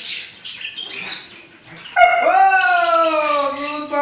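A dog gives one long howl starting about halfway through, its pitch rising sharply at the start and then sliding slowly down.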